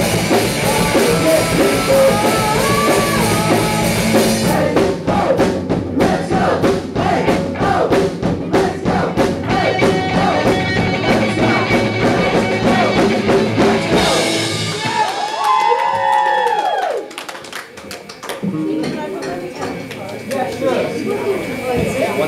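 Live rock band playing, with drum kit and vocals; from a few seconds in, sharp, evenly spaced drum hits drive the music under the voices. The song stops abruptly about two-thirds of the way through, followed by a few long gliding vocal calls and then quieter voices.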